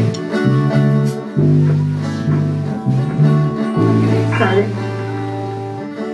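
Electric guitar played through an amplifier: a run of low, sustained notes that change every half second or so, ending on one long held note. The drums are not being played.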